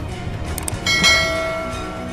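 A bell struck once just under a second in, ringing with several clear overtones and slowly fading.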